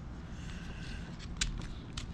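Bamboo sticks of a wooden burr puzzle rubbing faintly as they are pushed back into the assembly, with one sharp click about one and a half seconds in, over a low steady hum.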